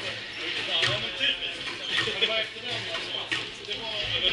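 Squash ball struck by a racket and hitting the court walls and floor: several sharp, irregularly spaced smacks, over background voices chatting.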